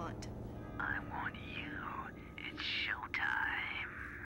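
A voice whispering, with the words indistinct, heard over a telephone line.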